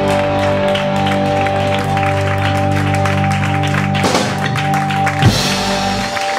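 Live rock band of electric guitars, bass, keyboard and drums holding one sustained chord, closing with a single loud hit about five seconds in, after which most of the chord drops away.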